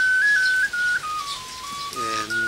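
Background music: a slow tune in a single pure, whistle-like tone, stepping between a few notes and dipping lower around the middle of the phrase.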